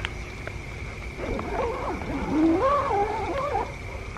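A wavering, howl-like animal call lasting about two and a half seconds, starting a little over a second in, its pitch rising and dipping.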